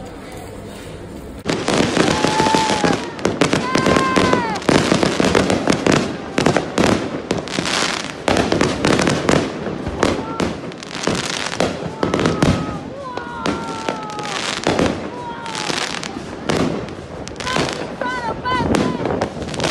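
Fireworks going off in a rapid, dense string of bangs and crackles that starts suddenly about a second and a half in. Short arching pitched tones sound over the bangs now and then.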